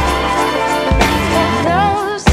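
Background pop-soul song with a steady beat and sustained chords; a singing voice comes in near the end.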